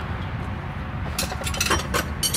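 Light metallic clinks of hand tools being handled, a couple of sharp ones a little past halfway and near the end, over a low steady hum.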